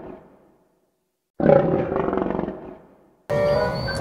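Tiger roaring twice: one roar fades out at the start, and a second loud roar about a second and a half in lasts about two seconds before dying away.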